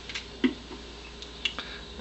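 A few short, light clicks and taps over a low room hum, from a mushroom and knife being handled and set down on a paper plate and wooden cutting board.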